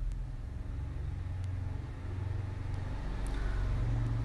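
A steady low rumble with a few faint ticks.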